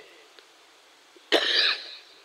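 A man coughs once, sharply and close into a microphone, about a second and a half in.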